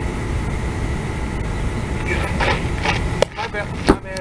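Steady low outdoor rumble, with faint voices coming in about halfway through and two sharp knocks close together near the end.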